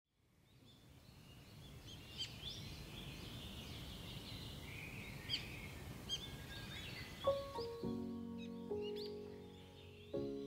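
Songbirds chirping and calling in woodland, fading in over the first couple of seconds. About seven seconds in, soft music of sustained, ringing notes enters beneath the birdsong and is re-struck a few times.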